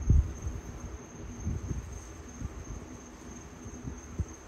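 Crickets trilling steadily at a high pitch, with low knocks and rumbles underneath, the loudest just after the start.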